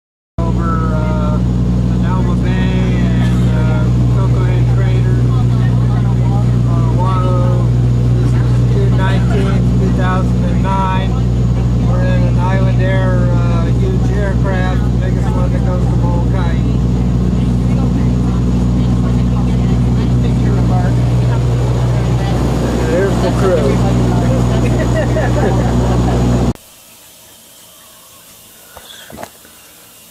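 Cabin drone of a twin turboprop airliner in flight: the engine and propeller give a loud, steady hum made of several low tones, with people's voices talking over it. It cuts off suddenly about 26 seconds in, giving way to quiet room tone with a few faint clicks.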